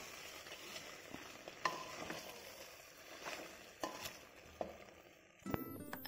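Wooden spatula stirring rice and chicken in an aluminium pressure cooker: faint scraping and rustling of the grains, with a few light knocks of the spatula against the pot.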